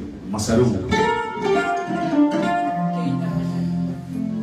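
Kora, the West African calabash harp, being plucked: a run of single notes that ring on, with a low bass note joining about three seconds in.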